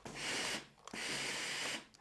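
Steam iron letting out two hissing bursts of steam while pressing a fabric collar: a short one of about half a second, then a longer one of about a second.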